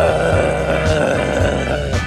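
A man's long, drawn-out "ahh" of exertion from a runner near the end of his run, held about two seconds with its pitch sliding slightly down. Background music with a steady beat plays underneath.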